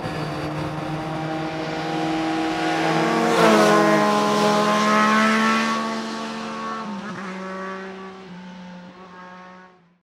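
Motorcycle engine running at a steady speed as the bike rides past, getting loudest with a drop in pitch about three and a half seconds in, then fading away toward the end.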